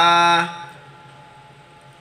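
A man's voice holding a hesitation 'eh' at a steady pitch for about half a second, then a pause with only faint background hiss.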